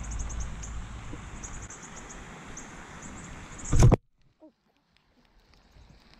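Low rumbling noise on an outdoor camera microphone, typical of wind or handling, with faint high chirps repeating over it. About four seconds in comes a brief loud thump, and the sound cuts off suddenly to near silence before faint outdoor noise returns.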